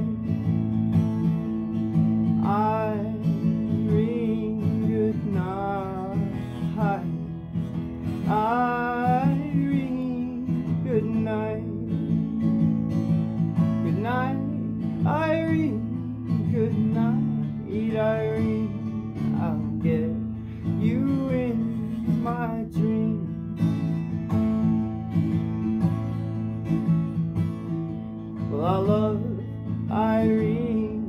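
Twelve-string acoustic guitar strummed steadily through an instrumental break, with short melodic runs rising above the chords every couple of seconds.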